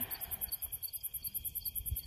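Night insects chirping in a rapid, even, high-pitched pulse.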